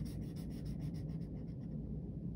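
Felt-tip marker drawing short strokes on lined notebook paper, a faint scratchy rubbing, busiest in the first second.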